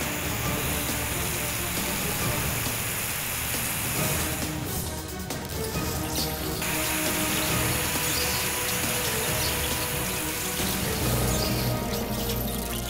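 Cartoon action soundtrack: background music under a steady rushing hiss of water jets spraying from the robots' hoses, the hiss easing for a stretch about five seconds in.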